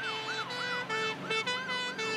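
Ambulance siren sound effect: a fast up-and-down wail repeating about three times a second over a steady lower tone.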